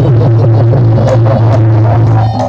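Traditional Reog gamelan accompaniment in which a loud, low throbbing hum covers the fainter melody.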